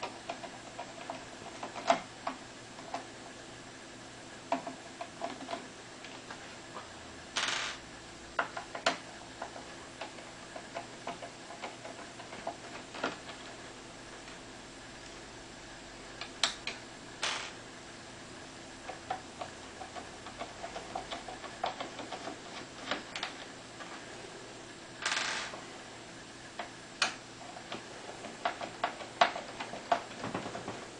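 Hex screwdriver undoing small screws from a Bang & Olufsen Beosound 3000's surround, with scattered light clicks and ticks of metal on metal and plastic. Two short scraping rasps come about 7 seconds in and about 25 seconds in.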